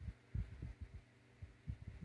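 Faint, irregular low thumps, about a dozen in two seconds, over a steady low electrical hum.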